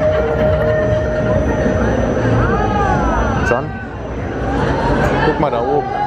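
Riders on a swinging pendulum ride calling out in long rising-and-falling whoops as the gondolas swing, over steady crowd chatter and ride noise.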